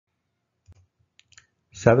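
A few faint, short clicks spread over about a second, then a voice starts speaking near the end.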